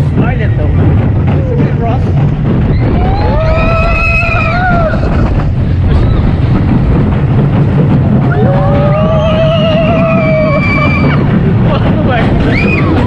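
Roller coaster on-ride sound: a loud, steady rumble of the train running on the steel track, with wind buffeting the microphone. Riders scream twice in long, drawn-out cries, one about three seconds in and the other about eight and a half seconds in.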